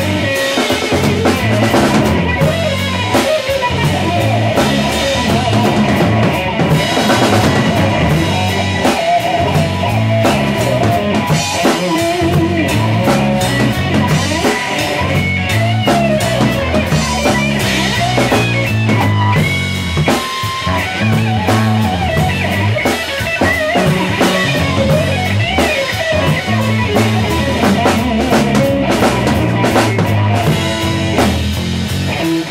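A rock band jamming live, with guitar, bass guitar and drum kit playing together loudly and without a break.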